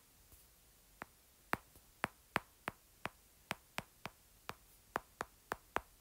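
Hard stylus tip clicking against a tablet's glass screen during handwriting. It is a string of about fourteen sharp, irregular taps, two or three a second.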